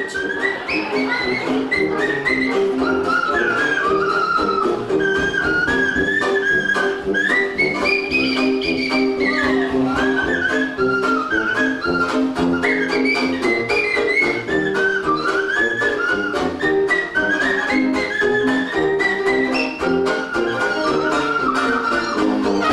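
Rubber chicken squeezed into a microphone as a novelty jazz solo, its squeaky squawk bending up and down in pitch like a tune. Underneath, the band plays steady held chords.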